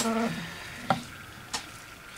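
Gloved hand smearing wet epoxy over a glitter-coated tumbler: faint sticky rubbing, with two light clicks about a second and a second and a half in.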